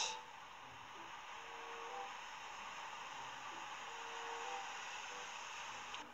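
Steady, even hiss of light rain and a wet street, with no distinct drops or taps.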